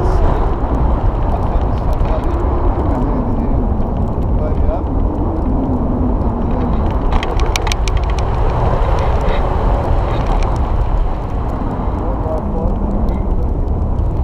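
Wind buffeting the microphone in hang-glider flight: a loud, steady low rumble, with faint voices under it and a few short clicks about seven seconds in.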